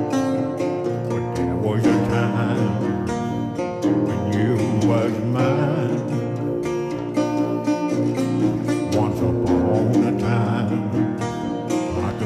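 Acoustic blues played on a fingerpicked metal-bodied resonator guitar: a steady run of picked notes over a thumbed bass line, the strings ringing on.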